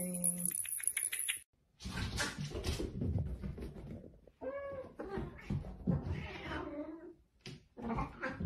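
A domestic cat meowing about four and a half seconds in, amid rustling and knocks.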